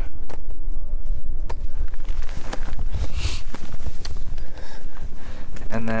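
Wind rumbling on the microphone, with scattered light clicks and scuffs.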